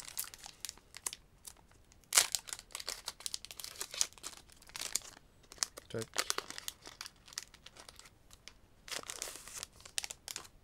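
A Pokémon trading-card booster pack's shiny foil wrapper being torn open and peeled by hand, crinkling in several separate bursts of rustle.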